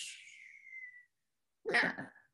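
The last beatboxed "tss" hi-hat hiss dying away, with a thin tone sliding down under it for about a second. Then a short vocal sound near the end.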